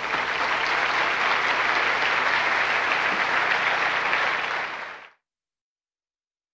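A large audience applauding steadily, with the sound cut off abruptly about five seconds in.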